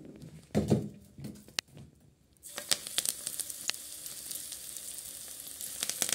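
Vegetable pakoras deep-frying in hot oil in a kadhai: a steady sizzle with frequent crackling pops, starting about two and a half seconds in. Before it come a few short knocks from the pan.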